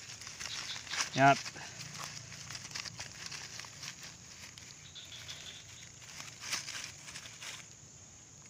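Dry leaf litter and grass rustling and crackling in scattered faint bursts, over a steady high chirring of insects.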